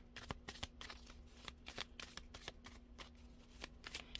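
A deck of tarot cards being shuffled by hand: a quick, quiet run of card clicks and taps.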